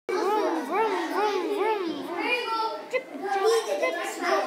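High-pitched children's voices: for about the first two seconds a voice rises and falls in quick repeated swoops, about two a second, followed by broken, chattering talk.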